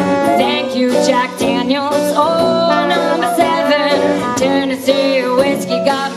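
Live small jazz band with clarinet, trombone, tuba, guitar and drums playing a whiskey song, with a woman singing lead. The horn and voice lines bend and glide over a steady rhythm.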